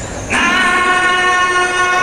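Amplified music starts suddenly about a third of a second in with a singer's voice holding one long, loud, steady note.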